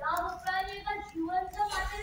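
A child's voice delivering lines in a drawn-out, sing-song way, with notes held briefly between short breaks.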